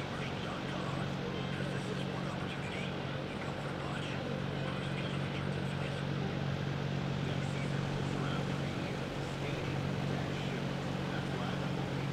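Indoor arena room tone: a steady low hum with indistinct voices in the background.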